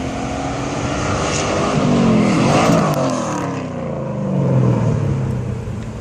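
Honda S2000's swapped-in 5.7-litre LS1 V8 at full throttle on a drag strip, its pitch climbing as the car accelerates. It passes close by about halfway through, the loudest moment, and the pitch drops as it pulls away down the track.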